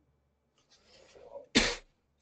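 A man sneezes once: a breathy intake building from about half a second in, then one short, sharp burst about a second and a half in.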